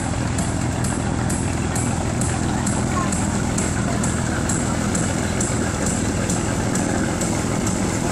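A river motor ship's engine running with a steady low hum. A faint, fast, regular high ticking runs over it, about two and a half times a second.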